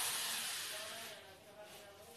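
Corded electric drill running with a thin bit in cedar wood, its whine fading away over the first second and a half and leaving near quiet.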